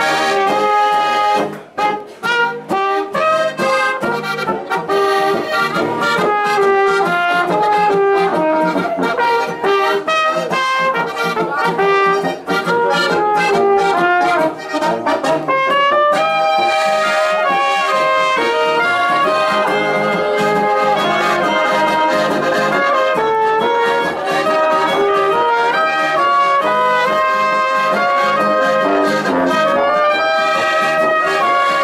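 Band music led by brass instruments playing a lively tune, with a couple of short breaks in the sound about two seconds in.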